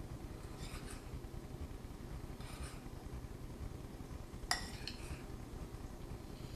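Metal spoon stirring dry flour mix in a glass mixing bowl: a few soft scraping strokes about two seconds apart, with a sharper clink of the spoon against the glass about four and a half seconds in.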